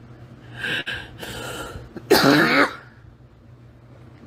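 A woman sobbing: two short, cough-like breathy sobs, then a louder voiced sob with a wavering pitch about two seconds in.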